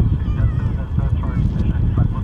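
Several overlapping bird calls, sliding in pitch, over a steady low rumble.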